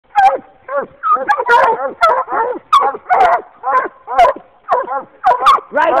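Walker coonhounds barking treed: a fast run of loud, pitched barks with falling pitch, about two a second and sometimes overlapping, the tree bark that signals a raccoon held up a tree.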